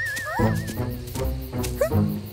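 Cartoon background music with a wavering, warbling tone that fades out within the first second, and short rising pitch swoops twice over it.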